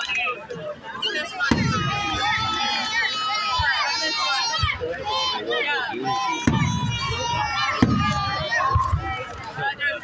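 Aerial fireworks shells bursting in a series of about six booms, with pitched sounds and voices from the watching crowd over them.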